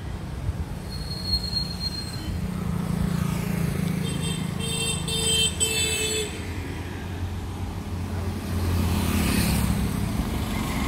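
Road traffic running steadily on a highway, with a vehicle horn honking three short times about halfway through. A passing vehicle's engine grows louder near the end.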